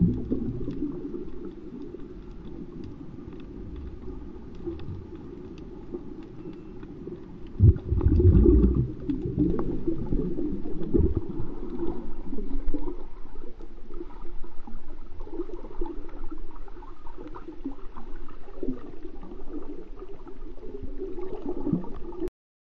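Muffled water noise heard with the microphone underwater: low rumbling and gurgling. A thump comes about eight seconds in, and after it the water churns louder with the camera just below the surface.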